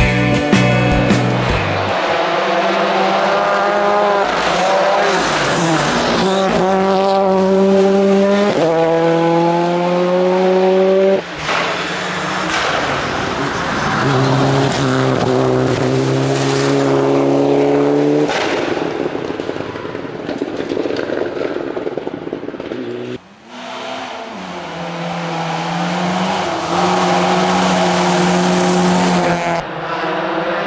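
Rally cars driven flat out on gravel stages, engines revving hard and climbing through the gears: each gear a rising pitch that drops back at the shift, over tyre and gravel noise. Several short passes follow one another with abrupt changes between them.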